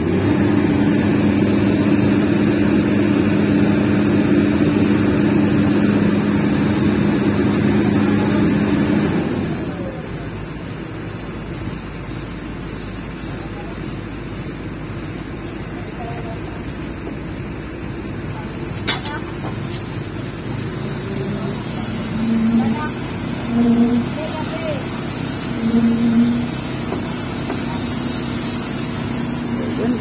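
Komatsu crawler excavator's diesel engine running steadily at high revs, then dropping to a lower, quieter idle about nine or ten seconds in. A few brief rises in the drone follow near the end.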